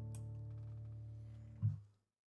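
Acoustic guitar's final chord ringing out and slowly fading. Near the end a short, loud low thump, then the sound cuts off.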